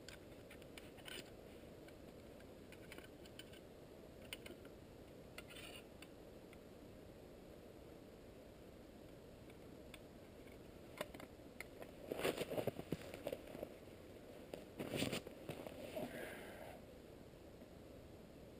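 Knife shaving and scraping a stick for fire tinder: a few faint scrapes and clicks at first, then a louder run of scraping strokes from about eleven to seventeen seconds in. The sound is muffled, as heard through a camera's waterproof housing.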